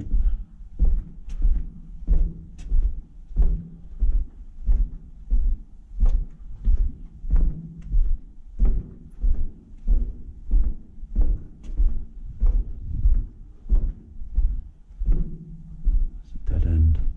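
Footsteps on a concrete floor at a steady walking pace, about three steps every two seconds.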